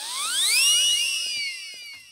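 Film soundtrack sound effect: a comic whooshing riser of several whistle-like tones that climb steeply for about half a second, hang, then slowly sag away over a hiss.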